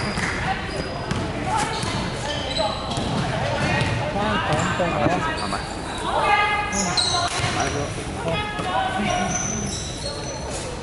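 A basketball game on a hardwood court in a large sports hall: the ball bouncing as it is dribbled, short high squeaks, and players' voices calling out.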